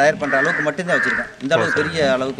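A man speaking, with a crow cawing twice over the talk.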